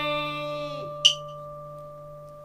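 Final notes of a đờn ca tài tử ensemble, moon lute and zither, ringing out after the closing chord. They thin to a few steady, pure tones that fade slowly. There is a brief light tap about a second in.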